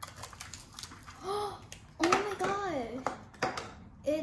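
Small plastic capsule pieces and wrappers crinkling and clicking as they are handled. A child's voice comes in about a second in and again from about two seconds, rising and falling in pitch, with no clear words.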